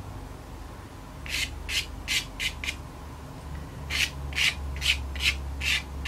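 A hard pastel stick scratching in short quick strokes across sanded Fisher 400 pastel paper as light fur lines are laid over darker colour. There are about five strokes, a short pause, then about six more.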